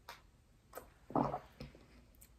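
A woman sipping and swallowing a drink from a glass: a few short, soft sounds, the strongest a gulp about a second in.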